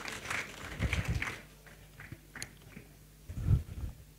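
Scattered audience applause, thinning out and dying away in the first second and a half, then quiet room tone broken by a sharp click and a short low thud near the end.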